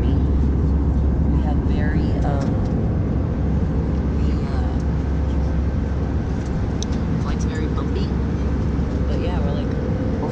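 Steady cabin drone of a passenger jet in flight: engine and airflow noise, heaviest in the deep rumble, with a faint steady hum above it.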